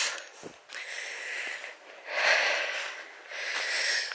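A woman breathing heavily and audibly, about three long breaths of roughly a second each, out of breath from walking uphill.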